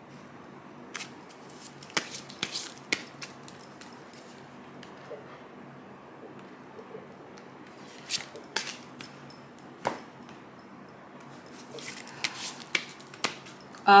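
A deck of tarot cards being shuffled and handled by hand: a few clusters of short card slaps and flicks, with quieter stretches between.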